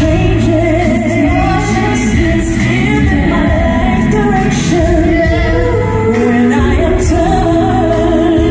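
Live R&B concert music: a male lead singer and two female singers singing together over band accompaniment played through the stage sound system.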